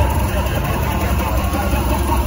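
Hardcore track through a club sound system at a breakdown: a voice over a steady, deep bass rumble, loud and distorted as picked up by a phone in the crowd.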